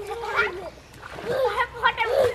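Pond water splashing and sloshing as several people swim and wade, pushing bamboo poles through it. High-pitched voices call out over the splashing.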